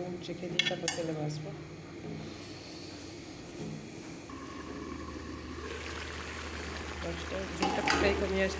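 A few light clinks of a metal cooking pan near the start. Then a steady low hum sets in, joined by a hiss, and louder pan clinks come near the end.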